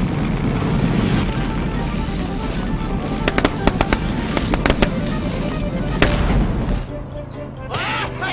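Cartoon soundtrack: music under a dense noisy sound effect, with a quick run of sharp cracks or pops between about three and five seconds in and one louder crack about six seconds in.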